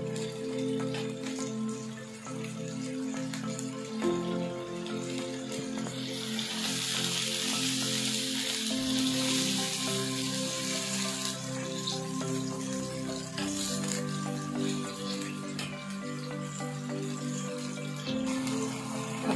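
Chicken and yogurt frying on high heat in a karahi, the sizzle of the yogurt's water boiling off strongest in the middle of the stretch, with background music of sustained tones underneath.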